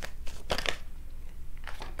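Tarot cards being handled and laid down on the table: a few light clicks and rustles, one at the start and a couple about half a second in, over a faint low hum.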